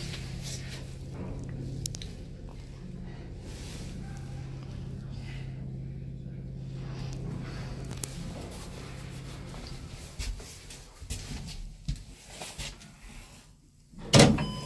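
ZREMB passenger lift car travelling in its shaft: a steady low hum of the drive that stops about nine and a half seconds in, followed by a few sharp clicks as the car comes to a halt.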